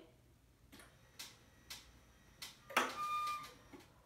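Faint clicks about every half second, then a louder short click-like sound with a brief beep-like tone about three seconds in.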